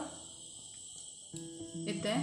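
Quiet pause filled with a faint, steady high-pitched chirring of crickets over low background hiss. A steady low hum comes in just past the middle.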